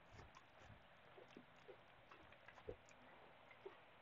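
Near silence, with a few faint, soft thuds of a horse and its handler walking on arena sand.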